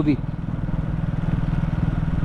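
Motorcycle engine running steadily as the bike cruises along, a low even drone.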